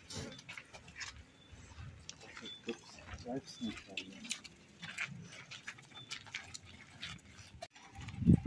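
Footsteps on a cobbled path, a scatter of short irregular clicks, with a few brief faint voice-like calls in the middle.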